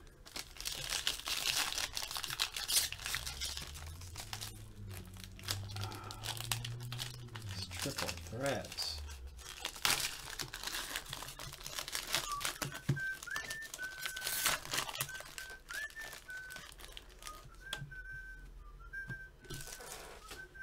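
Foil wrapper of a trading-card pack crinkling and tearing as it is pulled open by hand. In the second half someone whistles a wavering tune.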